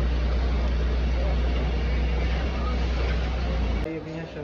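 Busy street noise over a steady low rumble, which cuts off abruptly near the end.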